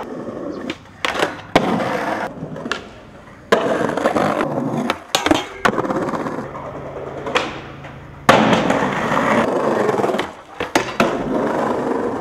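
Skateboard wheels rolling on concrete and paving, broken by several sharp clacks of the board popping and landing.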